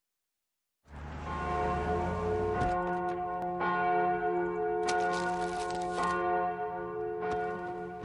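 Church bells ringing after a moment of silence, struck again about every second or so over a long, steady ringing.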